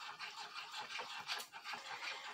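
Faint, irregular stirring in a small glass bowl of soupy gelatin slime mixture, soft sloshing with small scrapes and clicks; the mix is too wet from too much water.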